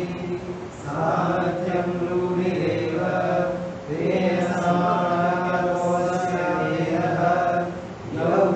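Sanskrit verse recited as a chant in long, held tones, in three phrases broken by short pauses about one and four seconds in.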